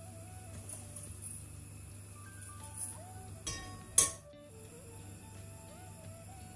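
Soft background music with a simple stepping melody. About four seconds in, a single loud clank: a metal wok set down on the gas hob's pan grate.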